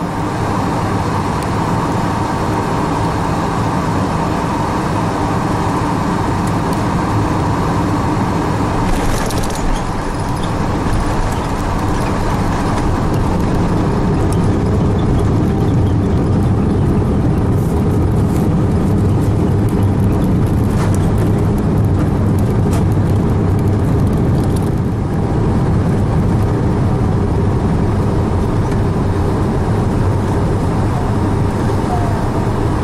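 Cabin noise inside an Airbus A380 landing: a steady rush of airflow and engine hum through touchdown and the runway rollout, growing louder about halfway through as the aircraft slows on the runway.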